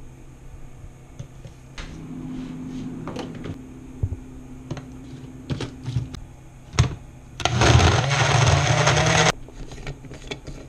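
Oster personal blender running for about two seconds near the end, loud and steady, then cutting off suddenly. Before it come a few sharp knocks and clunks as the blender cup and lid are handled.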